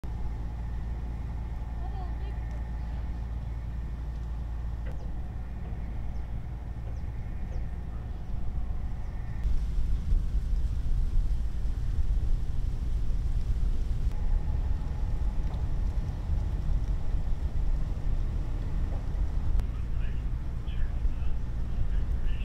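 Steady low rumble of outdoor ambience, which jumps to a louder rumble at a cut about nine seconds in.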